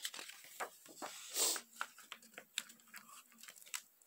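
Pages of a hardcover picture book being handled and turned: quiet paper rustling with scattered small taps and clicks.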